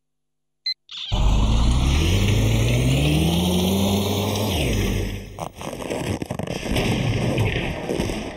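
Washing machine starting: a short electronic beep about a second in, then the drum motor spins up with a rising whine over a loud churning rumble, which runs on more roughly after about five seconds.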